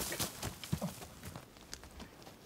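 Quick, uneven footsteps crunching over dry forest-floor litter of needles, leaves and twigs.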